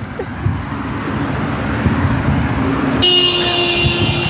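Road traffic passing, its noise building over a few seconds, then a car horn sounding one steady note for just over a second, about three seconds in.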